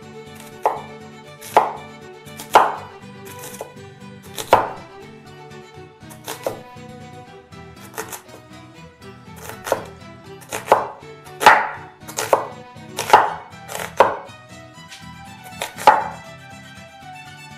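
Chef's knife slicing a red onion into julienne strips on a wooden cutting board: a sharp knock of the blade on the board with each stroke, about a dozen unevenly spaced, coming quicker in the second half. Soft background music runs underneath.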